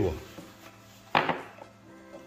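A single sharp knock of hard parts, with a short ring, a little over a second in, as old and new brake pads are handled and compared.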